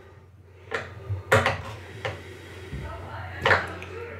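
A few light clicks and taps from small parts being handled on a model airplane's nose gear, about a second in and again near the end.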